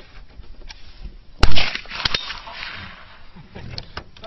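A single .22 gunshot: one sharp crack about a second and a half in, with a brief echo trailing off after it.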